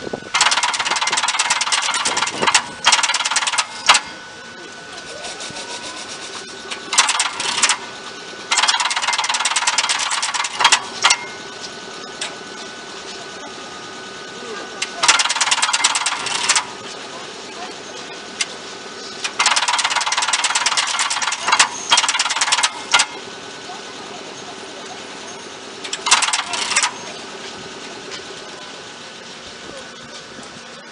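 Underfloor control equipment of an Ichibata 3000-series electric train operating: its switch gear and contactors give about seven bursts of rapid clicking and hissing, each one to three seconds long, over a faint steady hum.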